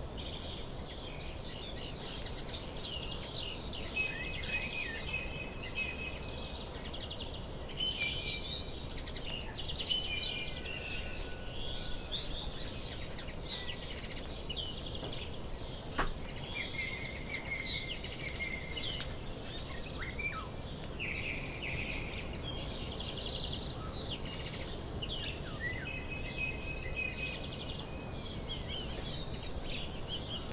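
Several small birds chirping and singing in overlapping calls and trills without pause, over a steady low background rumble of outdoor ambience. A single sharp click about halfway through.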